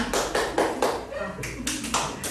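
Hands clapping in a short burst of applause: a string of sharp, irregular claps.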